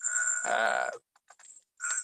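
Garbled audio from a video call: a distorted, voice-like sound with a steady high tone and whine, cutting out about a second in, then a short burst near the end.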